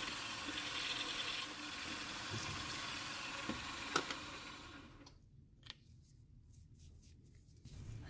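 Small milling machine spindle running with a drill bit in it, drilling a tommy bar hole through a knurled tool-steel knob. A sharp click comes about four seconds in, then the machine stops and the sound falls to near silence, with a few faint ticks.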